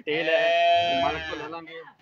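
A young black-and-white calf bawling: one long drawn-out call that fades out near the end.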